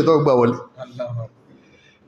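A man's voice speaking Yoruba into a microphone, sliding down in pitch at the end of a phrase, followed by a few short voiced sounds. It stops a little over a second in, leaving faint room tone.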